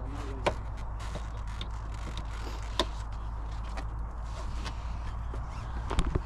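Wind rumbling on the microphone, with a few sharp clicks and knocks as the lid of a hard-shell roof-top tent is pressed down and fastened shut; the clearest knocks come about half a second in and near three seconds in.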